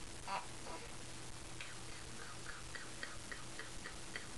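A quick, even run of light ticks, about three or four a second, starting about one and a half seconds in, after two brief soft knocks near the start.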